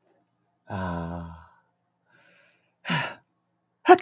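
A man's long, voiced sigh about a second in, falling away, then a short vocal sound near three seconds, just before speech starts.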